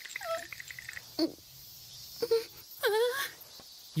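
A young woman's wordless, embarrassed whimpers and moans: several short pitched cries with gaps between them, the longest one falling and then rising about three seconds in.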